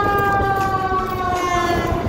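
A vehicle's warning signal in street traffic: one long, steady tone that drifts slightly lower in pitch and ends near the end.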